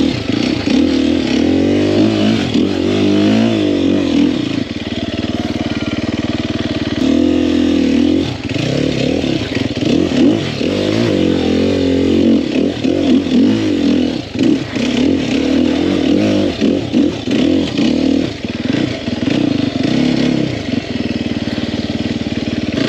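2021 Sherco 300 SEF single-cylinder four-stroke dirt bike engine, revving up and down again and again as it is ridden over rocky trail, with occasional sharp knocks.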